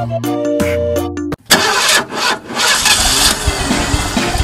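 Upbeat background music breaks off abruptly about a second and a half in, and a loud engine-starting sound follows: a motor catching and running with a rough, noisy rush.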